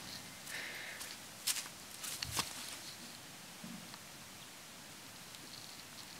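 Quiet handling sounds: a few soft knocks and rustles as a worn rubber hose is picked up off the dirt, with the loudest clicks about one and a half and two and a half seconds in.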